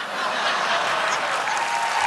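Studio audience applauding: it swells up quickly right after the punchline and then holds at a steady, loud level.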